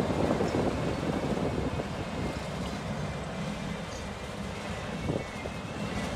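Bucket wheel excavator at work, its wheel cutting into the pit face: a steady rumbling, rushing noise, with a faint high steady tone coming in about two seconds in.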